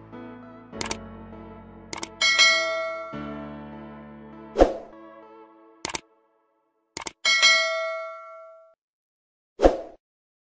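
Animated-outro sound effects: a series of sharp hits, two of them followed by bright bell-like chimes that ring and die away over about a second, over a low held music tone that stops about six seconds in.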